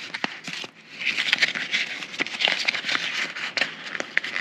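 Clear plastic packaging crinkling and crackling irregularly as it is handled and pulled open to get at a metal nail file.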